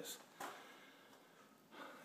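Near silence: faint room hiss, with a faint click about half a second in and a short breath near the end.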